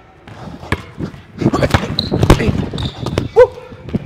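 Basketball dribbled hard on a hardwood gym floor, a few bounces and then a quick run of them in the middle, with brief high sneaker squeaks on the court near the end.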